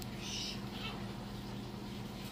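Steady low electrical hum, with a brief soft plastic rustle about half a second in as a deli cup is handled.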